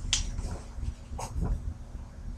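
A few short, sharp clicks and taps from hands handling the recording computer, with one just after the start and a couple more past the middle, over a steady low rumble.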